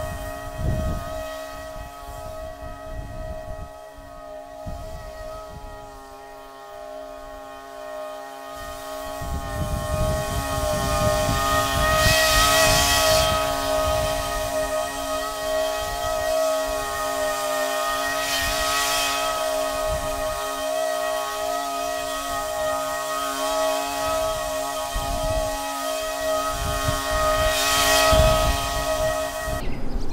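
Toro Grandstand stand-on mower running at a steady full-throttle pitch while mowing, engine and cutting blades together. It grows louder as the mower comes nearer after the first third, then cuts off abruptly just before the end when the engine is shut down.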